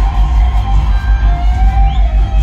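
Live band music played loud, with a heavy pulsing bass and sustained melody notes.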